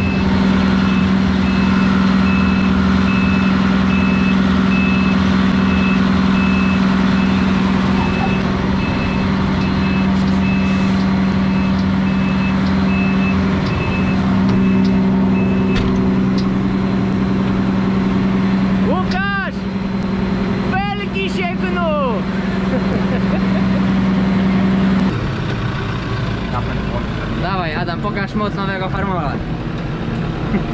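John Deere self-propelled forage harvester running steadily under load while chopping maize, with a low, even hum. A high electronic beep repeats at a regular pace and stops partway through. About 25 s in, the sound changes to a tractor cab with voices.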